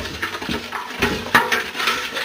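Stainless steel stockpot being handled, with irregular metallic knocks and clinks. The sharpest come about a second in and again half a second later.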